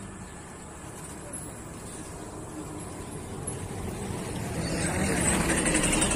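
Road traffic: a passing vehicle that grows louder over the second half, with people's voices near the end.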